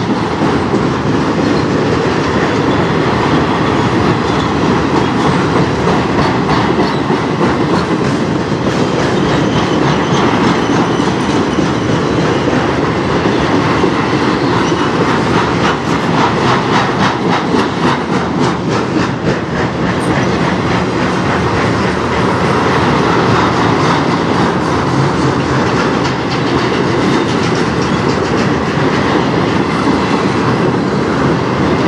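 Freight train flatcars rolling past: a steady, loud rumble of steel wheels on rail, with a thick run of rapid clicking of the wheels over the rail joints about halfway through.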